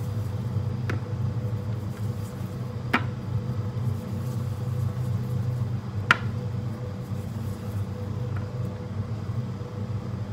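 A steady low machine hum with a faint higher tone held over it, and three light clicks, about one, three and six seconds in, the last the loudest.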